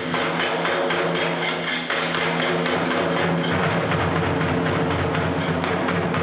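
Kagura music: small hand cymbals struck in a quick, even rhythm, about four or five strikes a second, over a steady low sustained tone.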